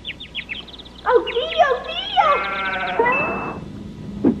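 Cartoon sound effects: a quick run of short falling chirps in the first second, then a cartoon character's voice sliding and wavering up and down for about two seconds, ending in a brief high steady tone.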